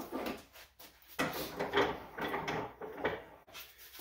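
Irregular wooden knocks and scrapes from a board and tools being handled and set up at a wooden workbench, about to be split with a rip saw.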